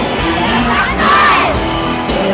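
Concert audience screaming and cheering over a live pop band's music. A burst of shrill, gliding screams peaks about halfway through, the loudest moment.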